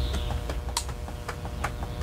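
About ten short, sharp clicks scattered irregularly over two seconds, over a low steady rumble.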